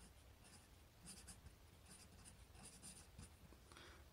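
Faint scratching of a Sharpie fine-point marker writing on paper: a series of short strokes, starting about a second in.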